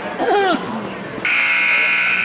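Gym scoreboard buzzer at a wrestling match, sounding one loud steady blare that starts a little past halfway and carries on. A spectator's shout comes just before it.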